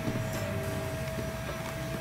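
Hard plastic toy shell being pried open by hand, a few faint clicks, under a steady held tone.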